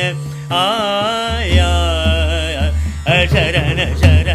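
Male dhrupad singing in Rag Bageshri, a composition in ten-beat jhaptal: the voice holds and bends long notes over a tanpura drone with pakhavaj accompaniment. The voice breaks off for about half a second at the start, then resumes.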